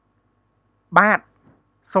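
Speech only: after a pause, one short spoken word about a second in, and the next words begin near the end.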